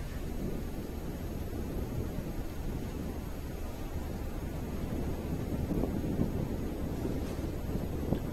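Steady low rumbling background noise on a live broadcast audio feed, growing slightly louder toward the end.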